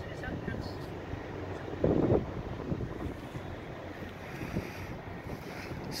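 Wind buffeting a handheld phone microphone: a steady low noise, with a short burst of a voice about two seconds in.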